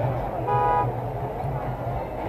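A horn toots once, briefly, about half a second in, over the steady chatter of a crowd.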